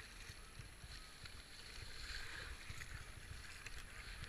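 Faint splashing and rushing of river water around a kayak's hull and paddle as it is paddled, with a low rumble underneath.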